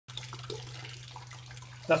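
Water trickling and dripping from a saturated sponge into a bucket below, over a steady low hum. A voice starts speaking at the very end.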